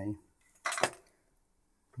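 A brief clatter of hard objects being handled on a workbench, lasting under half a second, about halfway in.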